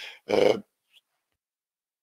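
A man's voice: one short drawn-out spoken syllable or hesitation sound near the start, then silence.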